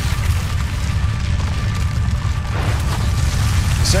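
Cinematic trailer sound design: a deep, steady low rumble with a faint held high tone above it, and a swell of noise near the end as the stone statues break apart.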